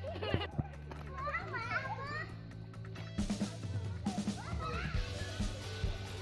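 Children calling out at play, their voices rising in pitch, over background music with steady low notes that change every second or two.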